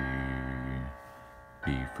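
A man's low chest voice holding the sung note name "D" at about D2 for roughly a second, along with the matching note from a tablet piano app. After a short pause, a lower note sung as "B flat" begins near the end.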